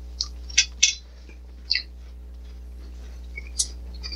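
Mouth sounds of someone eating a custard tart with a liquid filling: about five short, wet clicks and smacks spread over the few seconds, over a steady low hum.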